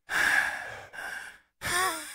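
Heavy breathing on a phone line: two long, noisy breaths with a short break between them, then another beginning near the end. It is a silent caller who breathes into the line instead of answering.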